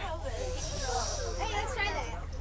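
Background voices talking over a steady low hum, with a high hiss lasting about a second from half a second in.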